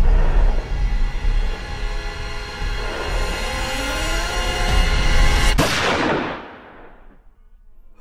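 Tense horror-trailer score over a deep rumble, cut by a single loud gunshot about five and a half seconds in that rings out and fades away.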